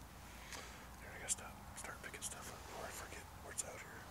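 A person whispering a few low words, with sharp hissing 's' sounds.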